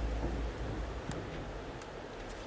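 Wind buffeting the microphone of a moving handheld camera: a low rumble in the first half second, then a steady hiss.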